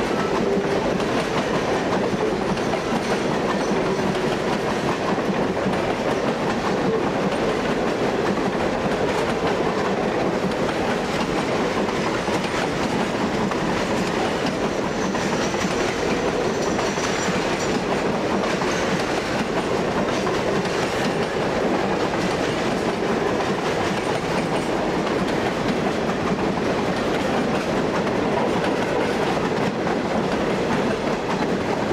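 Freight train of open-top hopper cars rolling past close by, its steel wheels running steadily over the rails.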